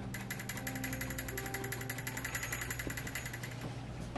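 A paintbrush scrubbing quickly back and forth on a taut stretched canvas, a fast, even run of scratchy strokes that stops shortly before the end, over a steady low room hum.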